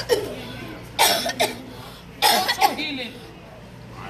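A person coughing hard in two harsh bursts, one about a second in and another just past two seconds.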